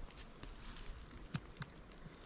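Quiet outdoor background with a couple of faint, short clicks about halfway through.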